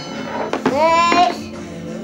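A young child's high sung note that glides up in pitch and holds briefly, about half a second in, with a couple of light knocks.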